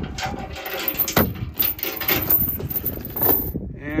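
Steel lifting chain clinking and knocking against its hook and bracket as it takes up the load of a bulk feed bag in a pickup bed, with scattered metallic clicks. A tractor engine runs steadily underneath.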